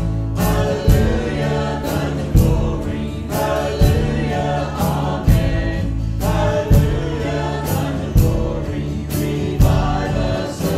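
Worship band performing a song: men's and women's voices singing together over strummed acoustic guitar and electric bass, with a steady beat.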